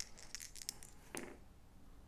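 Two six-sided dice being rolled: a few light, quick clicks as they tumble and settle on the playmat within the first second.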